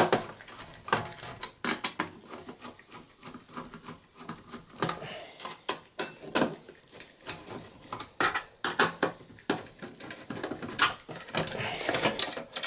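Irregular metallic clicks and clatter of a Phillips screwdriver working loose the heatsink screws in a desktop PC's steel case, with the heatsink and fan shroud knocked and handled as they come free.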